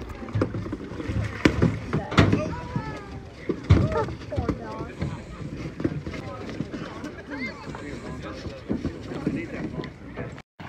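Indistinct talk of several people, with a few sharp knocks and clatter scattered through it.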